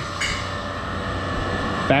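Steady machine hum and air noise of a baggage handling area, with a brief scuff just after the start as a backpack is slid by hand across the stopped conveyor belt.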